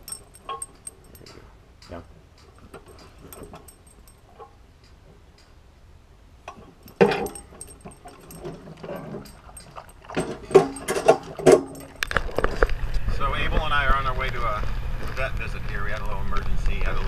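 Dog's collar tags jingling lightly inside a wire crate, then a food bowl set down and the dog eating from it, with a burst of clattering knocks about seven seconds in. Near the end the sound switches to the steady low rumble of a car cabin on the move.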